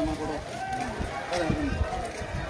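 Men's voices calling out and talking among a group walking together, with no clear chant.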